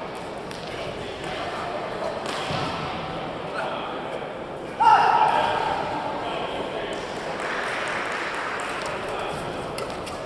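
Indoor badminton hall with spectators chattering throughout. A loud shouted call comes just before halfway, and short sharp racket strikes on the shuttlecock follow in the second half as a doubles rally gets going.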